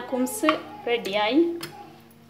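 A voice speaking over a glass plate clinking as it is set down on a stone countertop, with a sharp knock about half a second in and another near the end.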